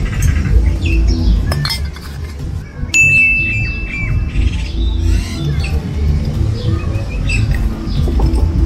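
Small birds chirping repeatedly over a constant low rumble. About three seconds in, a steady high whistle-like tone sounds for just over a second.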